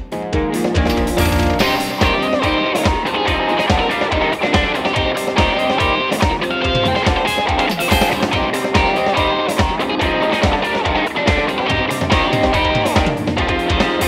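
Upbeat instrumental rock music: an electric guitar, a white PRS, plays over a backing track with a steady drum beat.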